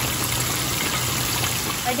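Breaded chicken breasts deep-frying in hot canola oil: a steady sizzle and bubbling of the oil.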